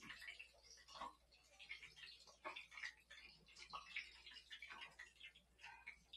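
Egg-soaked bread slices (rabanadas) shallow-frying in oil in a pan: faint, irregular crackling and popping.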